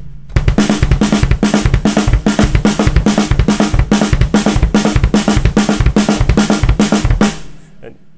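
Drum kit playing a single-pedal bass drum exercise: two kick drum strokes, then a right-hand and a left-hand stroke on the snare, repeated in an even rhythm. The pattern stops about seven seconds in.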